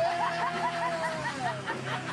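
A woman laughing in a quick run of high giggles, with background music playing underneath.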